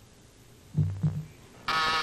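A contestant's low, hesitant hums while he searches for the answer, followed near the end by a steady game-show buzzer. The buzzer signals that his time to answer has run out.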